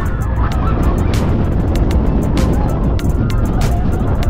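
Wind rushing over the microphone and the rumble of a steel hypercoaster train running through a turn, heard from the back-row seat, with music playing underneath.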